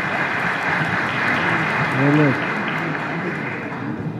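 Audience applauding steadily, with a single voice briefly heard over the clapping about two seconds in.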